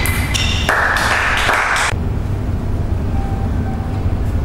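Table tennis ball struck by bats and bouncing on the table, a few sharp pings in the first second, followed by a couple of faint light taps near the end. A steady low hum runs underneath.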